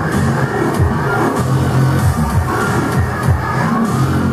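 Loud techno played live through a sound system: a heavy bass line under a steady beat, with a synth sweep rising in pitch near the end.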